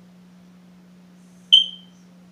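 A single short, high electronic chirp about one and a half seconds in, over a faint steady low hum.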